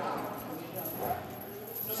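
Faint voices and crowd murmur in a large hall, with no clear speaker.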